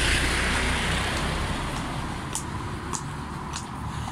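Heavy lorry passing close by and pulling away, its low engine rumble and tyre noise easing off over the seconds, with other road traffic behind. A few faint clicks come in the second half.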